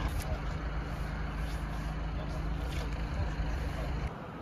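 A motor vehicle's engine idling with a steady low hum, with people talking in the background.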